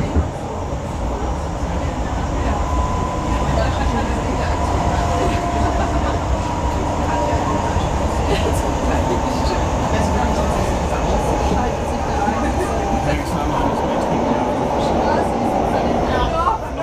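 Inside a Hamburg S-Bahn class 472 electric train running at speed: a steady rumble of wheels and running gear on the rails, with a faint thin whine held through most of it.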